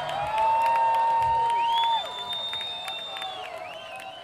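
Outdoor concert crowd cheering and clapping, with one long loud whoop for the first two seconds and a shrill whistle after it; the cheering then dies down.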